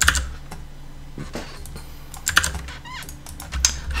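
Computer keyboard keys being pressed in a few scattered, irregular clicks.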